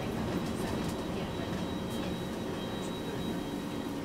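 Steady rumble of a bus in motion heard from inside the passenger cabin: engine and road noise with a faint, steady high whine above it.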